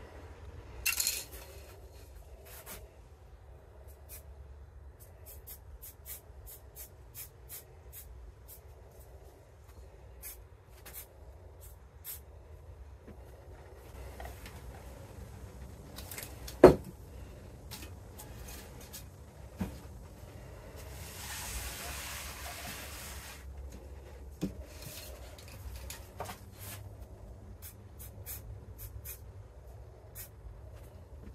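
Aerosol spray paint can hissing in two bursts, a brief one about a second in and a longer one of about three seconds past the middle. Scattered small clicks and knocks of tools and masks being handled run between them, with one sharp knock just past halfway.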